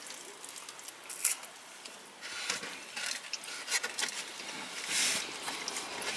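A person eating jerk chicken at close range: chewing and handling the food, with scattered soft rustles and small clicks, a few louder rustles about a second in and near the end.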